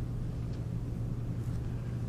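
Steady low hum of room noise, unchanging throughout, with no voices.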